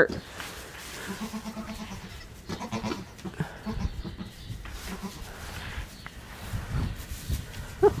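Young goat kids bleating, several short quiet calls spaced through a few seconds.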